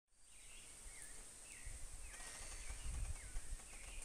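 Faint tropical forest ambience: a bird repeats short whistled notes that dip and rise, over a steady high-pitched insect drone. A low rumble, like wind, swells around the middle.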